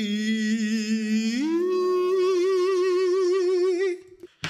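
A man's voice singing a long drawn-out note with vibrato, sliding up to a higher held note about a second and a half in, then cutting off at the end.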